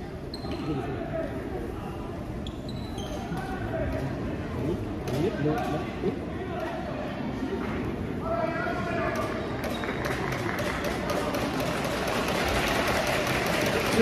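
Indoor basketball game: a ball bouncing on the hardwood court amid crowd chatter and voices in a large hall. The crowd noise and a run of quick sharp sounds build steadily louder over the last several seconds.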